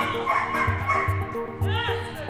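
Background music with a steady beat, with a dog barking over it: a burst in the first second and a short bark near the end.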